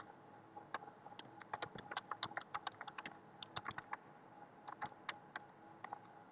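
Faint typing on a computer keyboard: quick, irregular keystroke clicks, thinning out over the last couple of seconds.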